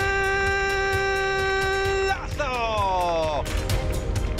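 Football commentator's long, drawn-out goal cry, held on one pitch for about two seconds and then sliding down and fading, over background music with a steady beat that takes over near the end.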